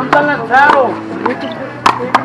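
Two sharp smacks of a small rubber handball being struck in a rally, one just after the start and one just before the end, with players' voices calling out between them.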